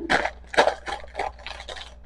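Plastic bread bag and paper bag crinkling in the hands: several short, irregular rustles.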